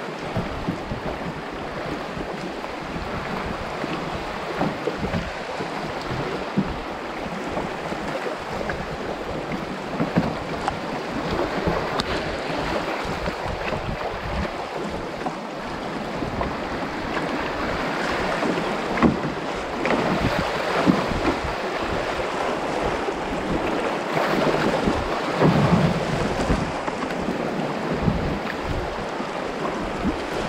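River rapids rushing and splashing around a canoe, with irregular splashes and wind buffeting the microphone; the water grows louder in the second half.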